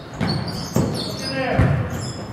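A basketball bounced on a hardwood gym floor, a few uneven dribble thuds echoing in the large hall.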